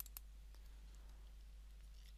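Two quick computer mouse clicks right at the start, as the polygon selection is closed on the crossplot, then near silence over a low steady hum.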